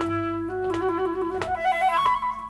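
Flute playing a melodic fill: one note held, then a run of shorter notes, over a strummed acoustic guitar with a few sharp strums.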